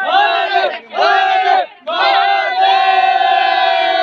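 A group of men chanting a devotional slogan together in three loud shouted phrases, the last one held for about two seconds.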